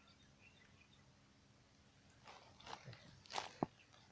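Near silence at first, then from about halfway a few rustling, swishing movement noises as someone moves through dry reeds and shallow water at a pond's edge, with a sharp click near the end.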